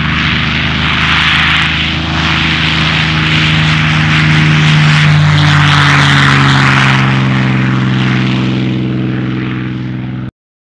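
Car engine running steadily at speed under heavy wind rush, recorded from a camera on the hood. The engine note shifts to a new pitch about halfway through.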